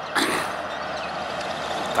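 Volvo semi truck hauling a loaded tanker trailer, its diesel engine running steadily as it approaches.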